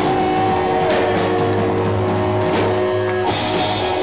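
Live skatepunk band playing loud electric guitars, bass and drum kit, with chords held ringing. A brighter crash comes in a little over three seconds in.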